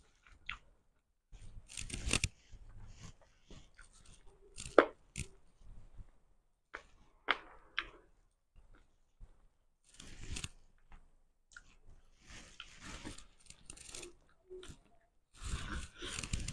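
Fingers pulling apart cooked salmon on a plate, close to the microphone: irregular short tearing and picking sounds, with chewing between them.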